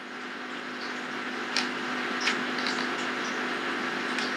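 Steady whir of an overhead electric fan with a low hum, and a couple of faint clicks from handling.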